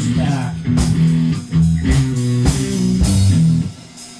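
Rock band playing: electric guitar and bass guitar riff over drums, dropping out briefly near the end.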